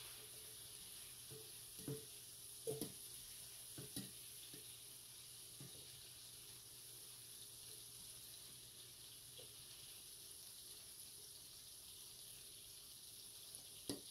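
Shrimp frying in hot butter in a skillet: a steady, faint sizzle. A few light knocks of a slotted spatula against the pan come in the first six seconds as the shrimp are lifted out.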